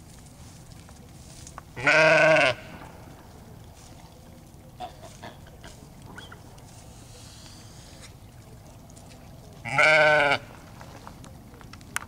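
Sheep bleating twice, loud and close, each a single bleat of under a second, the second about eight seconds after the first.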